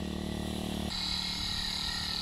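Small engine of a backpack power sprayer running steadily. The sound changes abruptly about a second in, where a steady high hiss comes in over a weaker low hum.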